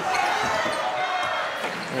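A basketball being dribbled on a wooden court, a few bounces heard over the murmur of an arena crowd.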